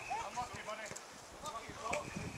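Rugby players calling and shouting to one another across an open grass pitch, heard from the touchline, with knocks of running footsteps on the turf.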